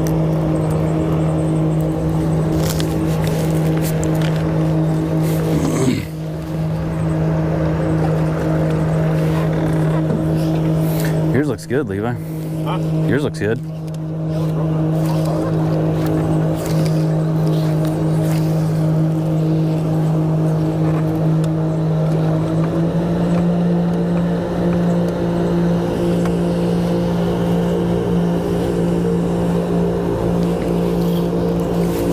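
Bow-mounted Garmin Force electric trolling motor running with a steady hum, stepping slightly higher in pitch about three quarters of the way through.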